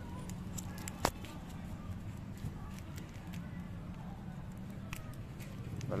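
A sharp click about a second in and a few light ticks as plastic wiring connectors are unplugged and handled, over a steady low hum.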